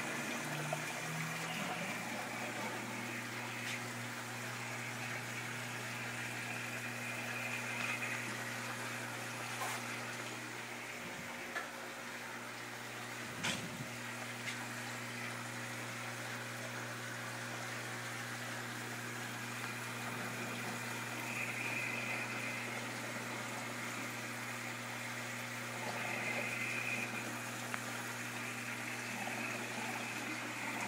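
Aquarium equipment running: bubbling water from air-driven sponge filters over a steady low hum, with a single light tap about halfway through.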